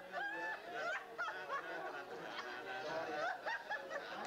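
Several people laughing and calling out over one another, high-pitched voices overlapping with no clear words.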